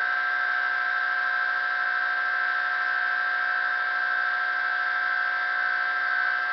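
Bedini-style magnet pulse motor running steadily, giving a constant high-pitched whine with a fainter lower tone under a light hiss, while drawing about half a watt.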